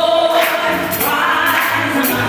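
Live gospel worship song: several women's voices singing together in harmony, with a band playing along underneath.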